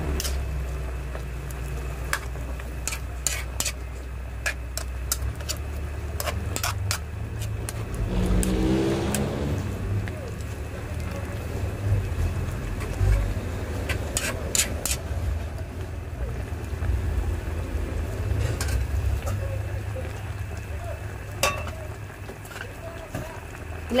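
Metal spoon clicking and scraping against a metal pan as a thick, creamy chicken stew is stirred, over a steady low rumble, with a brief louder swell about eight seconds in.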